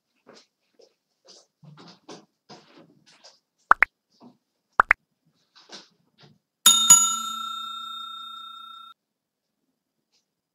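Animated subscribe-reminder sound effects: two pairs of quick rising plops, then a bell-like ding that rings out and fades over about two seconds.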